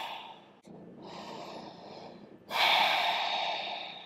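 A woman's audible breathing: the falling tail of a voiced sigh, a quieter breath in, then a loud breathy exhale starting about two and a half seconds in and fading.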